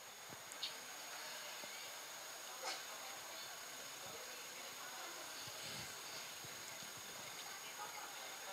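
Quiet pause on a stage sound system: steady hiss with a faint high hum, and a few soft knocks and rustles as the singers shift into sitting positions holding their microphones.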